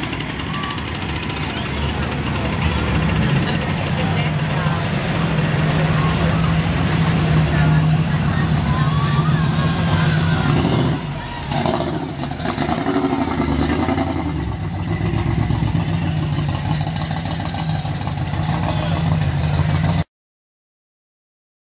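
A car engine idling steadily, with people talking in the background.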